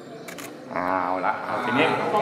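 Camera shutter clicking a few times in quick succession about a third of a second in, then a person speaking.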